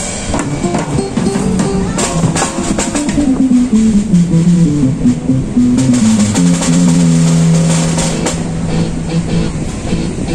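Acoustic drum kit played live, with bass drum, snare and cymbal hits, over a backing track from a portable speaker. The backing track carries a melody that steps downward, then holds one long low note from about six seconds in until near the end.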